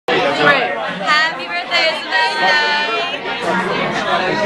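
Several people chattering over one another, with one voice held in a long drawn-out call about two seconds in.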